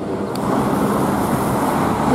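Steady rushing road-traffic noise, swelling slightly at first and then holding even, with no distinct engine note.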